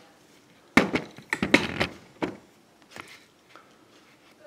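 Handling noise: a quick run of knocks and clatters about a second in, lasting about a second and a half, then a single click near three seconds.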